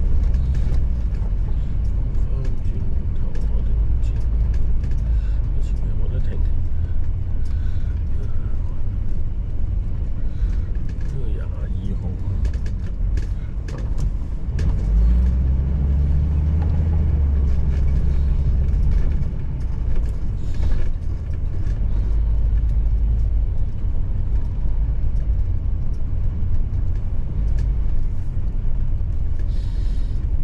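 Road noise inside a moving vehicle: a steady low rumble of engine and tyres.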